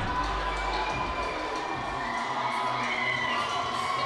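Fight crowd cheering, a steady din from the audience around the ring just after the referee stops the bout.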